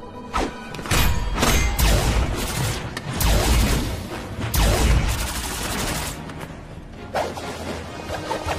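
Animated fight sound effects over dramatic action music: a run of sharp hits and whooshes, each with a deep boom, coming in quick clusters through the first five seconds.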